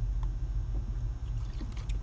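A steady low background hum, with a few faint clicks near the start and again near the end.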